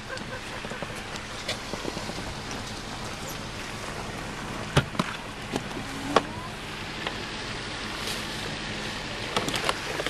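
Steady low hum of a car idling with a constant hiss over it, and a few sharp knocks about halfway through.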